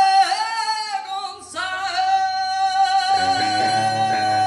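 Live rock band: a woman singing and then holding one long high note from about a second and a half in, over electric guitar, with bass and the rest of the band coming back in fuller near the end.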